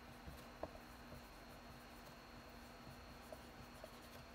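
Faint sound of a dry-erase marker writing on a whiteboard: a few soft taps and scratches of the felt tip, over a low steady hum.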